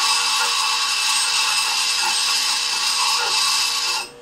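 High-speed steel tool bit held against a spinning bench grinder wheel, grinding its top face: a steady, even grinding hiss that cuts off abruptly at the very end as the bit is lifted from the wheel.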